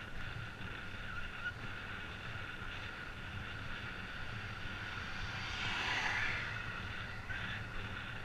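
Steady wind and road rumble from a camera riding along a paved road, rising and falling as an oncoming vehicle passes about six seconds in.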